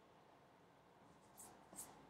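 Two quick pencil strokes scratching on drawing paper, about a second and a half in and just before the end, over near silence.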